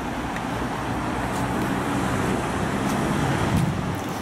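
Steady low rumble of motor vehicle noise, growing slightly louder, then cut off abruptly at the end.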